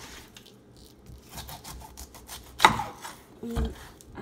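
A kitchen knife sawing through a whole pineapple's tough rind on a wooden cutting board, with faint repeated scraping strokes. There is one sharp knock of the blade against the board a little past halfway.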